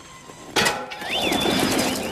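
Cartoon sound effects as two ponies swap hammocks. A sudden whoosh comes about half a second in, then a rustling clatter with a short, squeaky whistle that rises and falls.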